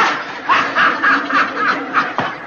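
A man laughing in a run of short, quick snickering bursts.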